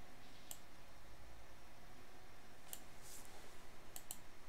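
Faint computer mouse clicks: one about half a second in, then a quick cluster of clicks near the end, over low steady hiss.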